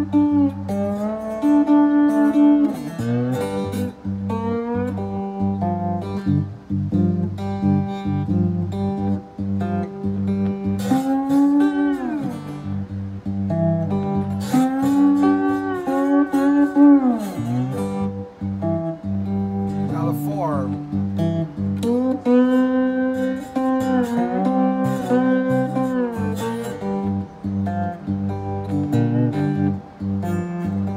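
Three-string cigar box guitar played with a glass bottleneck slide in a blues rhythm. Several notes slide up and down in pitch, most clearly near the middle and later on.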